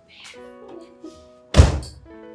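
Soft background music with held notes, and a single loud, heavy thunk about one and a half seconds in that dies away quickly.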